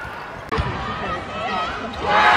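Indoor netball arena: voices in the hall with dull thuds from the court. They start abruptly about half a second in.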